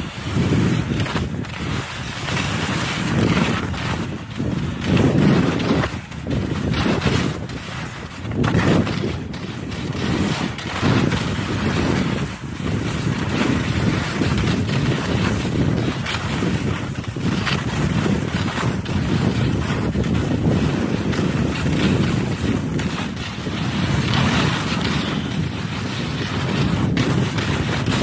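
Wind rushing over the microphone of a skier on the move, swelling and easing every second or two, with skis scraping over hard, wind-crusted snow.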